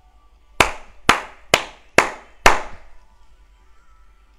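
Five sharp hand claps, a little over two a second, the last one the loudest.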